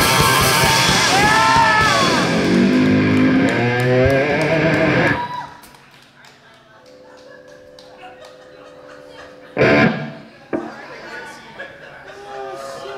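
Live rock band of electric guitar, bass and drums playing loudly, with a bending guitar line and a falling run, then stopping abruptly about five seconds in. Afterwards a few held notes ring quietly, a single sharp loud hit lands shortly before ten seconds and a smaller one follows, and talk begins near the end.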